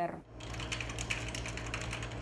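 Rapid, irregular clicking of keys on a computer keyboard being typed on, starting about a third of a second in, over a low steady hum.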